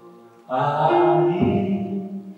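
A man singing or chanting a drawn-out phrase that starts about half a second in, changing note partway through, after the last held keyboard chords fade out.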